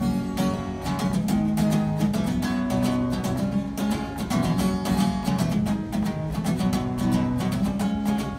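Solo acoustic guitar playing the instrumental opening of a song, coming in suddenly with a steady run of chords and no voice over it.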